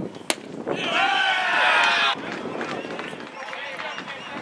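A baseball pitch popping into the catcher's mitt, a single sharp crack about a third of a second in, followed by a loud, drawn-out shout lasting over a second that cuts off suddenly.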